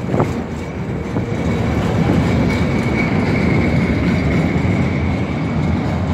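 Tram running along the street: a steady rumble of wheels on rails with a thin high whine held through most of it.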